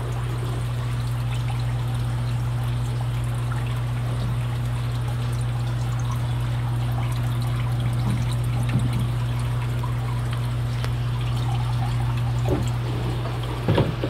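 Steady trickle of running water in a fish holding tank, over a constant low hum.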